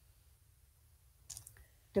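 Faint steady low hum from an open microphone, with a short cluster of sharp clicks about one and a half seconds in.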